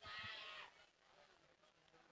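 Near silence, with a brief faint distant voice calling out at the start.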